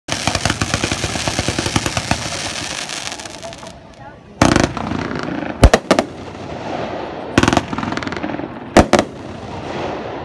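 Fireworks display: a rapid run of crackling reports in the first few seconds that fades away, then separate shell bursts, a pair about five and a half seconds in being the loudest, and another close pair near the end.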